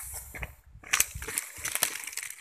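Irregular rustling with a few sharp clicks and knocks as a wire-mesh fish trap holding live fish is handled over dry leaf litter, loudest about a second in.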